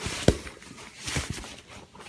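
Soft fabric saddlebag cooler with a plastic lining being handled and opened: rustling, with one sharp knock near the start.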